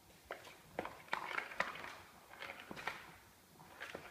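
Plastic ball-track cat toy knocking and rattling as a kitten bats at it and the ball rolls around inside: an irregular string of clatters and knocks, loudest between about one and two seconds in.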